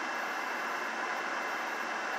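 Steady, even hiss of air inside a car cabin, typical of the climate-control fan blowing.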